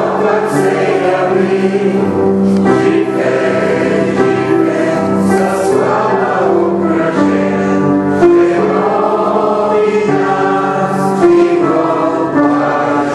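A choir singing sacred choral music, with long held chords that change every second or two.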